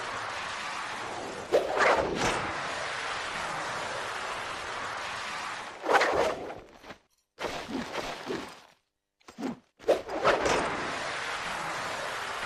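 Film sound effects: a steady rushing noise broken by sudden whooshes and thuds about two, six and ten seconds in, with two brief drops to silence between them.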